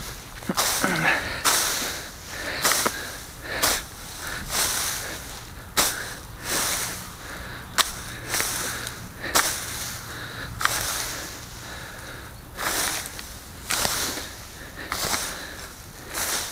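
A rake dragged through dry, dead grass and old leaves: repeated scratching, rustling strokes about once a second, with a short pause about two-thirds of the way through.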